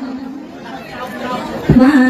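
A woman's amplified voice ends a Khmer Buddhist devotional phrase, then a pause filled with faint background chatter. Near the end there is a thump on the microphone, and she starts singing again on a steady held note.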